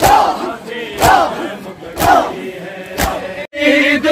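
Crowd of men doing matam: loud chest-beating strikes about once a second in unison, each with a shouted chant from many voices. Just after three and a half seconds the sound cuts off suddenly and a sung noha lament with voices joining in takes over.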